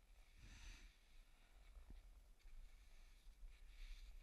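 Near silence: a faint, soft swish of cross-country skis gliding on snow about half a second in, with a few faint clicks near the end.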